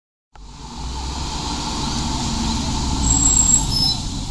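Road traffic: a vehicle running close by, a steady rumble with hiss that cuts in suddenly, with brief faint high squeals about three seconds in.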